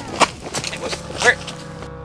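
Two short loud vocal outbursts, the first just after the start and the second about a second later, over a steady held music drone that carries on after them.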